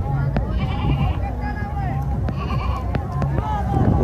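Goats bleating, two wavering calls about half a second in and again after two seconds, over the chatter of many voices.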